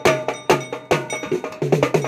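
A set of drums played fast with two sticks in a driving rhythm, with hard accented strokes near the start, about half a second in and about a second in.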